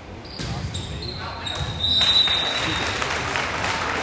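Indoor volleyball rally on a gym floor: a serve and a few sharp ball hits in the first second or so, then a long high referee's whistle about two seconds in ending the point, followed by spectators cheering and calling out in the hall.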